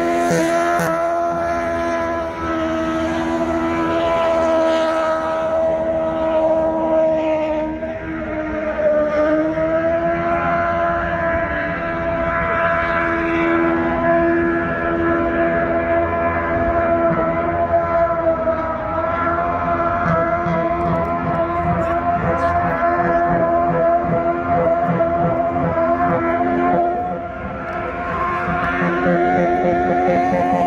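Car engine held at high revs through a long, tyre-smoking burnout: one steady, loud note that sags briefly about eight seconds in and then climbs back.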